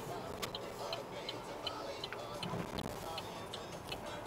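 Car turn-signal indicator clicking steadily, about three ticks a second, signalling a left turn, over the low hum of the car's cabin.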